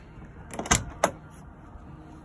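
Two sharp clunks about a third of a second apart from the body of a Volkswagen Westfalia camper van, the first the louder and longer, over low handling noise.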